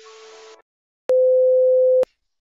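A brief, faint burst of hiss, then a click about a second in and a loud, steady single-pitch beep: the test-card tone that goes with a TV test pattern, played as a sound effect.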